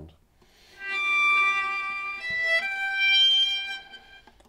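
Viola bowed sul ponticello, close to the bridge, giving a very icy cold tone full of high overtones. It plays three notes: a held one, a short one about two seconds in, then a longer one that fades near the end.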